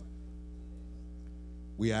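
Steady electrical mains hum, a low buzz with a stack of evenly spaced overtones, carried in the audio feed. A voice comes in near the end.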